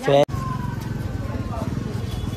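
A brief voice, cut off abruptly, then a vehicle engine running steadily close by in a busy street, a dense low pulsing sound.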